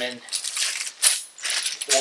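Loose steel bolts, nuts and washers clinking and rattling as they are picked up and set down on a concrete floor, in a quick series of sharp clinks.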